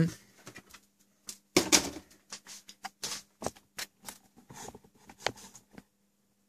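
Irregular clicks, taps and light knocks of hands handling the back of a PC case and its cables, the loudest knock about a second and a half in, over a faint steady hum.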